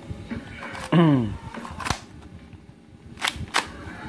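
Sharp clicks from spring airsoft pistols being handled: one click just before two seconds in, and a quick pair of clicks about three and a half seconds in. A short falling vocal sound about a second in is the loudest moment.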